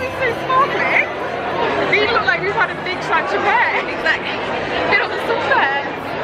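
Women's voices talking close to the microphone over crowd chatter.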